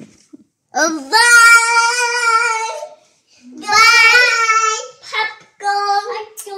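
A young child's voice singing out two long, held high notes, about a second and a half each, followed by two short sung calls near the end.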